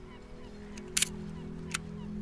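Outro sound effect: a steady low droning chord with two sharp clicks, one about a second in and one near the end.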